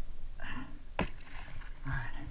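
A waterproof dry bag tossed into the sea, landing with a splash, and a single sharp knock about a second in.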